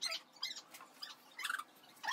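A few faint, short, high-pitched chirps or squeaks from a small animal, scattered through a quiet stretch.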